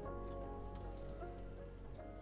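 Online slot game soundtrack: background music of held notes that change pitch a few times, with a light ticking from the spinning reels as they come to a stop.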